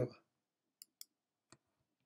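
The last syllable of a man's speech, then three short faint clicks, two close together under a second in and a third half a second later.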